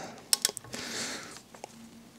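A few sharp metal clicks and a short scrape as a hand tool is set onto a bedknife screw on a cast-iron bed bar to loosen it, followed by one more small click.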